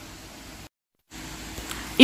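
Faint, steady background hiss of room tone, broken by a brief dead gap of total silence a little under a second in, where the recording is cut.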